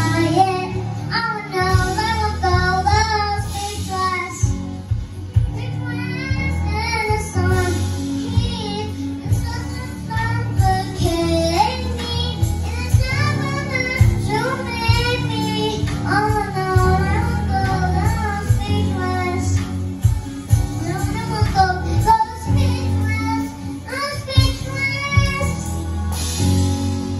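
A young girl singing a song into a microphone, backed by keyboard and an electronic drum kit.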